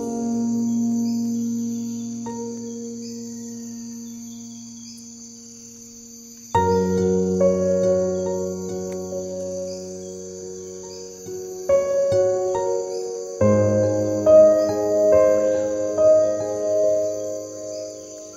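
Calm piano and guitar music: slow, sustained chords that fade away, with new chords coming in about six and a half seconds in and again near twelve and thirteen seconds. A steady high chirping of crickets runs underneath.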